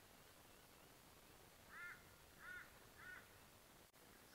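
Faint crow cawing: three short caws, a little over half a second apart, in the second half.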